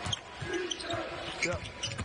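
A basketball being dribbled on a hardwood court, its low bounces recurring through an arena crowd's murmur.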